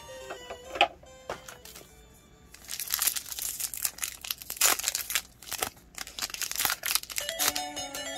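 Foil wrapper of a Pokémon trading card booster pack being crinkled and torn open by hand, a quick run of crackles lasting several seconds. Background music plays at the start and comes back near the end.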